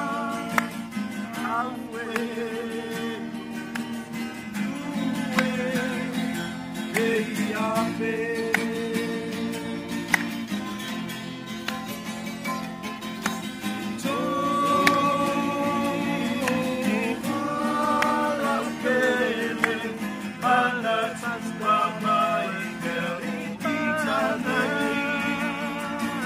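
Several men singing a slow song together in Samoan, accompanied by two strummed acoustic guitars. The song is an Indonesian song sung in Samoan translation.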